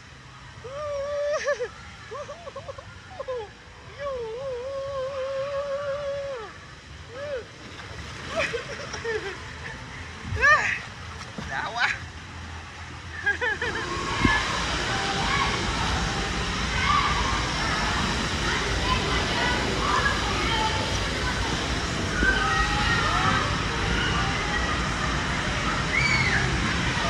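Riding down an enclosed water-slide tube: water swishes under the rider, who lets out long wavering cries and a few rising whoops. About halfway through, a loud steady rush of running water takes over, with faint voices in it.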